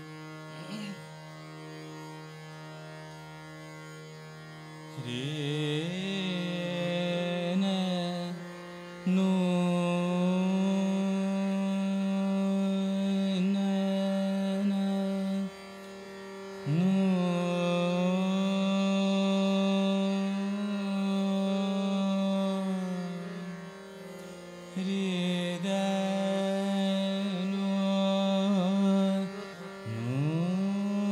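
Male Hindustani classical vocalist singing long held notes with slow glides between pitches in Raag Chhaya Nat, over a steady tanpura drone with harmonium following the voice. There is no tabla. The sung phrases come in about five seconds in and are separated by short pauses where only the drone sounds.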